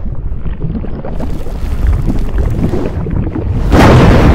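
Intro sound effect: a low rumbling, wind-like whoosh that builds, then a sudden loud blast near the end as the logo bursts into view.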